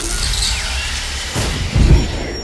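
Portal sound effect: a loud rushing, rumbling noise, with a heavy low thump near the end as a person drops out of it onto the floor.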